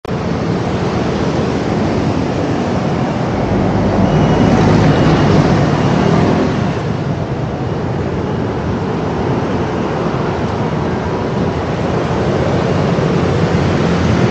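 Busy city road traffic: motor scooters, cars and buses passing in a steady wash of noise, growing louder for a couple of seconds as a vehicle passes close about four seconds in.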